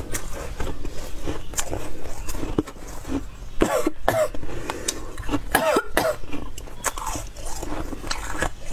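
Close-up chewing and crunching of soft ice, with many short crisp crunches. About halfway through come two short throat sounds from the eater, like a cough or throat clearing.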